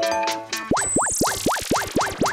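Cartoon-style sound effect: a rapid run of springy boings, about seven a second, starting just under a second in, with a rising shimmering whoosh above them, following a few short plinking musical notes.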